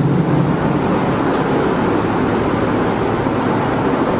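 Steady, fairly loud background noise, an even rushing hiss with no clear rhythm or tone, filling the gap between spoken sentences.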